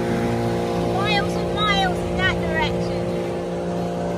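Dinghy outboard motor running at a steady pitch under way, with the hiss of water along the hull. A few short voice-like calls sound over it in the middle.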